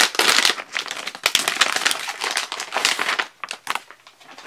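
Glossy plastic toy blind bag crinkling and crackling as it is handled and emptied. The dense crackling dies away just before the end.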